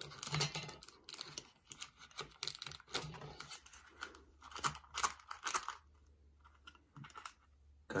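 Plastic packaging of a Pokémon trading card product crinkling and tearing as it is opened by hand, in irregular rustles that go quiet for a second or so near the end.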